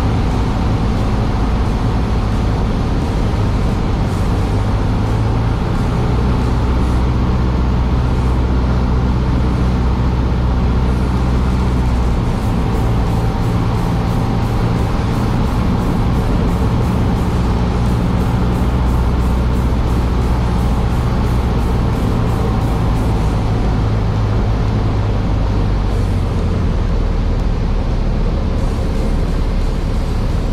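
Single-engine light airplane's piston engine and propeller droning steadily in the cockpit, with the engine note shifting a few times during the descent to land.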